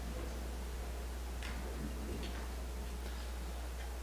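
A steady low electrical hum with a few faint, light clicks, about one and a half and two seconds in, from vessels being handled on the altar.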